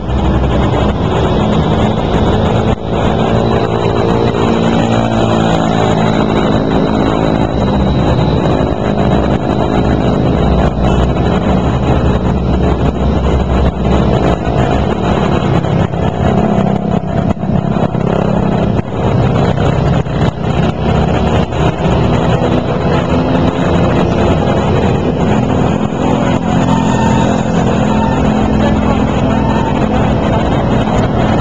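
Loud, steady road noise with the wavering hum of motor vehicle engines and a low rumble.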